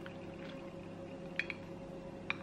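Faint sipping of coffee through a straw from a glass jar mug, with a few small wet clicks about half a second in and again around a second and a half in.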